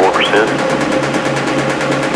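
Electronic music: a steady held drone under sweeping, voice-like sounds that rise and fall in pitch, one rising sharply just after the start.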